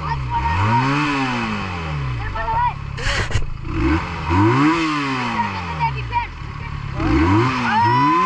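Benelli motorcycle engine revved three times, each rev rising and falling over about two seconds, with a short sharp noise about three seconds in. Excited children's voices over it.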